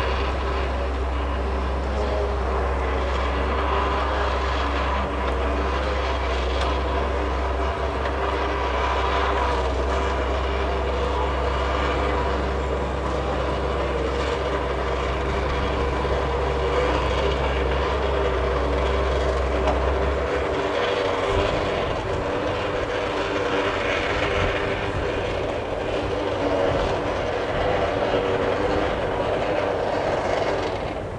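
Cable yarder's engine and winch running steadily as the carriage is hauled along the skyline: a continuous machine drone with a whine of several steady tones. The deep low hum beneath it breaks up and turns rougher about twenty seconds in.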